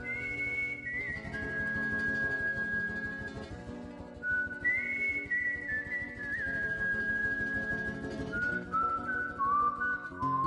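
Music: a whistled melody of long held notes that slide between pitches, over a soft sustained backing.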